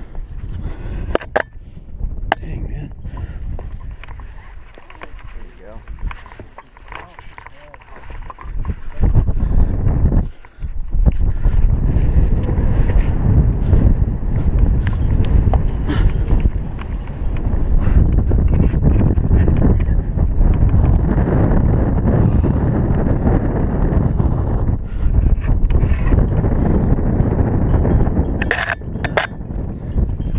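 Wind buffeting a helmet-mounted camera microphone on an exposed rock face: a rough rumble that turns much louder after the first several seconds, with a brief dropout, and stays loud. A few sharp clicks of climbing gear come near the start and again near the end.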